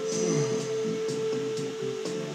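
A man yawning into a close microphone, his voice sliding down in pitch, over background music holding one long steady note.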